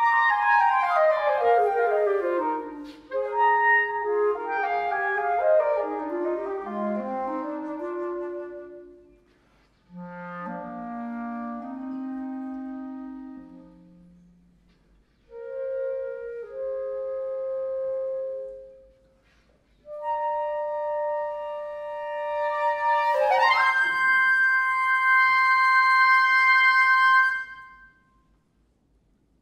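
Flute and clarinet playing a classical duet. They start with quick falling runs of notes, then play slower, lower phrases with short pauses between them. They finish on long notes held together, which stop shortly before the end.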